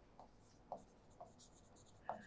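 Faint scratching and light taps of a pen on an interactive display screen as words are written by hand, mostly in the second half.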